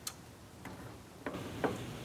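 A few faint, scattered light clicks and taps as a metal jar lifter is picked up and clamped onto a filled glass quart canning jar.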